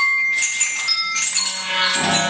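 Contemporary chamber music for clarinet, cello, harp and percussion played live: a high held note fades out early over a shimmering, rattling high texture with scattered short high notes, and a low sustained note comes in near the end.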